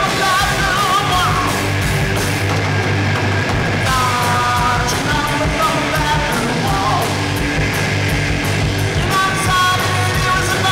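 A live rock band playing loud: distorted electric guitars, bass guitar and a drum kit, with long wavering high notes that come and go over a steady, heavy low end.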